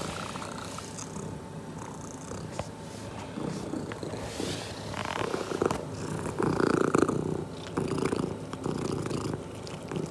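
Domestic cat purring close to the microphone as it sniffs and starts to eat pieces of smoked salmon, with louder, irregular bursts of sound in the second half.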